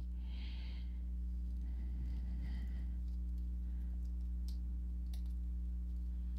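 Steady low electrical hum, with faint soft rustling of a deck of oracle cards being shuffled by hand and a few light clicks near the end.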